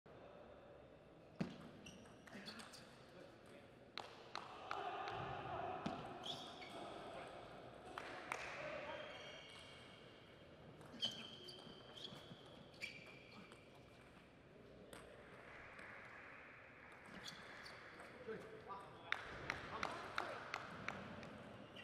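Table tennis rallies: a celluloid-type ball clicking off rubber-faced rackets and the table in quick sharp taps, several points' worth, with voices between the rallies.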